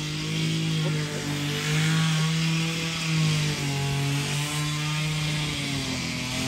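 Small engine of a grass-cutting machine running steadily, its pitch stepping down a little about three and a half seconds in.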